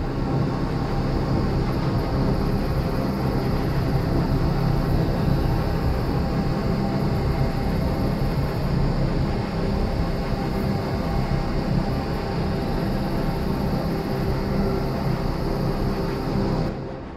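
Cinematic soundtrack drone under a title card: a loud, steady, dense rumble with a few held tones in it.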